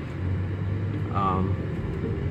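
Low, steady rumble of a car driving slowly, heard from inside the cabin, with a brief voiced hum about a second in.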